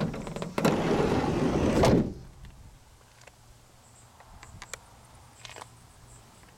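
The sliding side door of a Ford Transit Connect cargo van rolling along its track for over a second and shutting with a thud about two seconds in. A few faint clicks follow.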